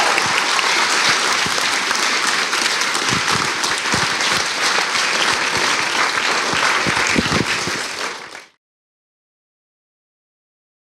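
Audience applauding, a steady dense clapping that fades out quickly and stops about eight and a half seconds in.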